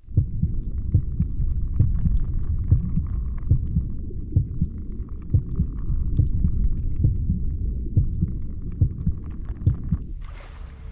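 Low, muffled rumbling with many irregular soft thumps, like the sounds inside a body: the sound-design opening of a music video, with no singing yet.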